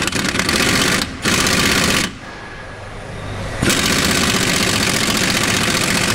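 Impact wrench hammering on the lower rear shock absorber bolt of a Lada Niva, undoing it, in rapid bursts: two short runs, a quieter stretch about two seconds in, then a long run from about halfway. The bolt comes loose easily.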